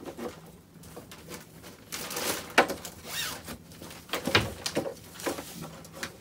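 Rustling and handling noises of things being packed into an open hard-shell suitcase, with a wire coat hanger among them. The noises come as a string of separate short rustles, with two sharp clicks about two and a half and four and a half seconds in.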